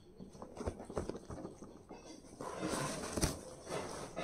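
A cardboard parcel box being opened by hand: scattered light taps and scrapes on the cardboard, then a louder rustling scrape of the flaps being pulled up about two and a half seconds in, with a sharp click near its end.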